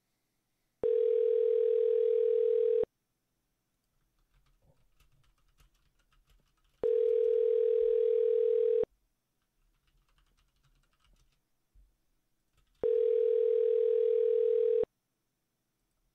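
Telephone ringback tone on an outgoing call: a steady tone lasting about two seconds, heard three times with about four seconds between. This is the two-on, four-off cadence of the North American ring signal, and the line is ringing but not yet answered.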